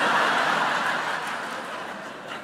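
A large audience laughing together, loudest at the start and dying away over the two seconds.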